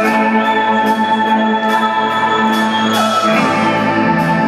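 Live rock band playing an instrumental passage: sustained keyboard chords with a gliding lead tone over a steady beat of cymbal strokes.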